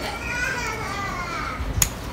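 A child's high voice calling in the background, then one sharp click near the end as bonsai scissors snip a branch.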